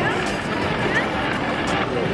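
Busy street ambience: a steady rumble of noise with scattered voices of passers-by.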